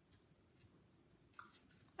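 Near silence: room tone, with one faint, short rustle of paper cardstock being handled about one and a half seconds in.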